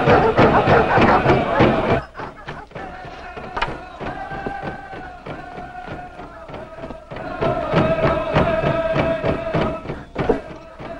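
A crowd chants over a steady drumbeat until about two seconds in, when the chanting cuts off. The drumbeat then carries on more quietly under long held musical notes, growing louder again near the end.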